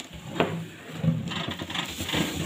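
A single sharp knock, then rustling and rubbing of the plastic bag wrapped around a new air fryer as hands handle it on the table.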